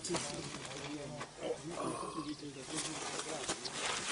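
Indistinct conversation of several people talking at a distance, too faint to make out words, with a few light rustles or knocks.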